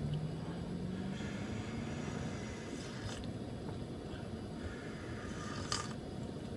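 Quiet sips of hot coffee from a paper cup, over a steady low background hum.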